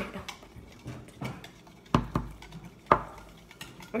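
A spoon stirring borax into hot water in a measuring cup, knocking against the cup in about four sharp clinks.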